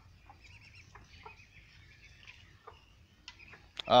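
Faint clucks and short peeps from a free-ranging flock of chickens and Muscovy ducks with ducklings. Near the end a person gives one loud call.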